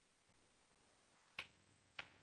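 Two sharp computer mouse clicks about half a second apart, the second near the end, over faint steady hiss.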